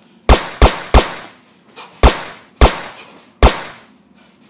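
Six sharp gunshot-like bangs, each with a short echoing tail: three in quick succession, then three more about half a second to a second apart.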